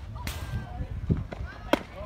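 Two sharp pops of a softball smacking into a leather fielder's glove, one just after the start and a louder one near the end, with spectators calling out between them.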